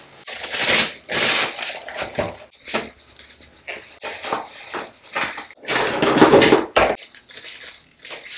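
Cloth rustling in irregular bursts as a head scarf is pulled and tied over the hair, with the loudest bursts near the start and again about six seconds in.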